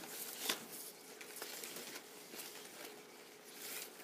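Flax strips rustling and scraping against each other as they are pushed and pulled through a woven basket by hand, with a sharper click about half a second in.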